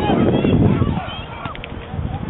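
Outdoor football match sound: wind rumbling on the microphone for about the first second, then easing, under short shouts from players on the pitch. A few sharp knocks come about one and a half seconds in.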